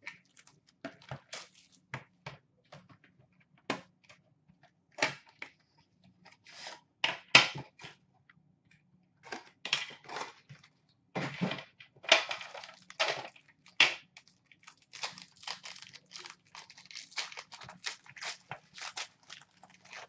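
Hands tearing open a cardboard trading-card box and handling the packaging and its tin: irregular tearing, crinkling and rustling with scattered clicks, in short bursts.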